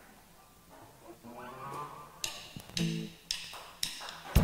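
Acoustic guitar starting a song intro: a few soft notes, then strummed chords about half a second apart, quiet at first and getting louder.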